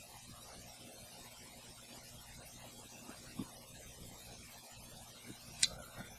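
A man drinking soda from a can: faint and quiet, with a couple of soft gulps, then one short sharp sound just before the end as he finishes the sip.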